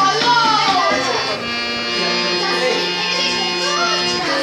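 Harmonium played by hand: reedy held notes sounding together as chords, the chord changing about halfway through.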